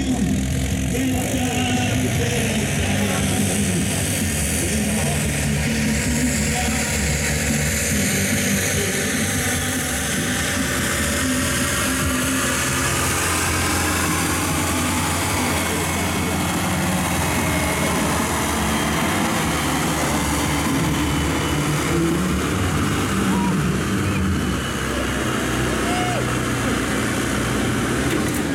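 Belarus farm tractor's diesel engine labouring under full load as it drags a weight-transfer pulling sled, a steady heavy drone that holds its level with little change in pitch.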